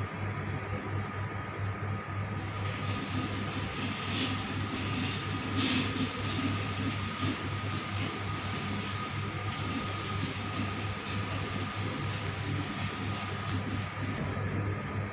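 A steady mechanical hum with an even rushing noise, like a running fan or motor; the rushing grows a little fuller about three seconds in.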